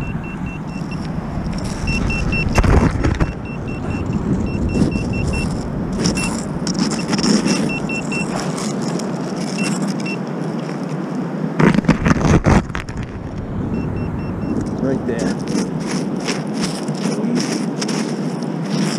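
Handheld metal-detecting pinpointer beeping in rapid runs of short, high pulses as its probe nears a buried target, over a gloved hand scraping through wet sand and pebbles. A louder clatter of stones comes about twelve seconds in.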